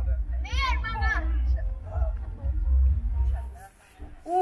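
Wind buffeting the microphone as a low rumble, which drops away suddenly near the end. A raised voice calls out about half a second in, with fainter voices after it.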